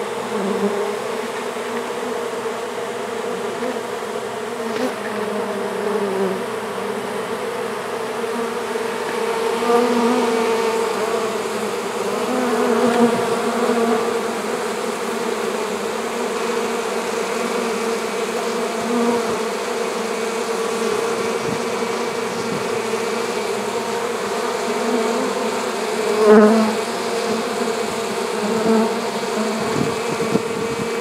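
Honeybees buzzing in a dense, steady hum at the hive entrance of a newly hived colony, with bees fanning as it settles in. A few louder swells come through, the strongest about twenty-six seconds in.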